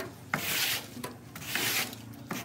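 A long-handled broom sweeping wet leaves across a steel trailer bed: two sweeping strokes, with a sharp tap as the broom strikes the floor at the start.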